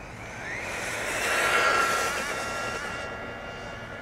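MJX Hyper Go brushless RC car running flat out on a 3S lipo. The high motor whine rises in pitch at first, then holds, with tyre hiss. It grows louder to a peak about halfway through, then fades as the car passes and moves away.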